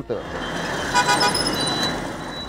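Steady city road-traffic noise from motorcycles and buses in a jam, with a brief vehicle horn toot about a second in.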